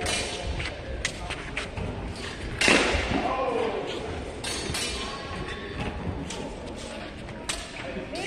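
Large-hall noise at a longsword tournament: scattered knocks and thumps with voices across the hall. A loud sharp impact comes a little under three seconds in, followed by a short voice.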